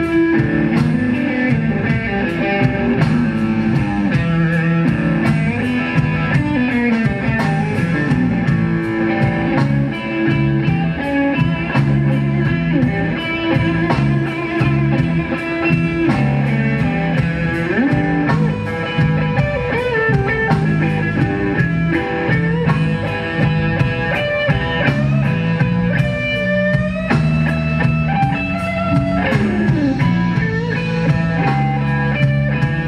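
A live blues band playing an instrumental stretch on electric guitars and drum kit, with no singing.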